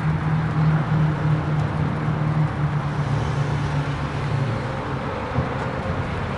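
Steady road traffic noise, with a low engine hum that weakens about halfway through.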